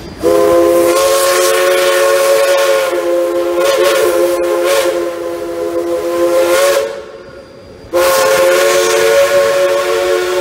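A 1929 Heisler steam locomotive's chime whistle sounds two long blasts, several notes at once. The first lasts about six and a half seconds; after a short break, the second starts about eight seconds in and is still sounding at the end.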